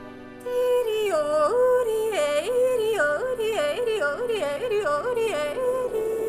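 Yodeling over a music track: a voice comes in about half a second in and leaps rapidly up and down between low and high notes in quick repeated flips, over held accompanying chords.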